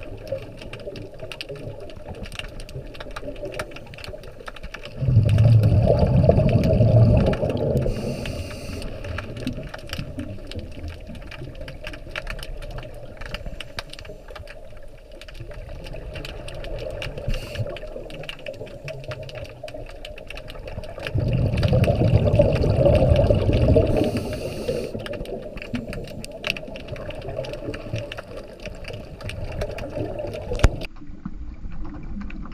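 A scuba diver's regulator heard through an underwater camera housing: two exhalations, each a loud rumbling burst of bubbles about 3 s long, around 5 s in and again around 21 s in, each followed by a short hiss of inhalation. Faint steady crackle of the water between breaths.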